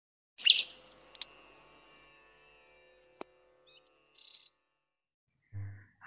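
Intro sound effects: a bright high chirp about half a second in, with a ringing chime that fades over about two seconds, then a single sharp click and a few faint short chirps.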